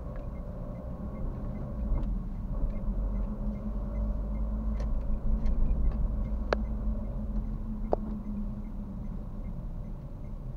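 Car driving, heard from inside the cabin: a steady engine and road rumble that swells as the car pulls away and eases near the end, with two sharp clicks from inside the car about six and a half and eight seconds in.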